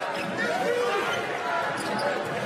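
Arena game sound from a basketball broadcast: a basketball bouncing on the hardwood court over the steady noise of the crowd.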